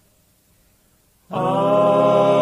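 Near silence as one song ends, then about a second and a half in a southern gospel male quartet comes in on a held chord in close harmony, opening the next song.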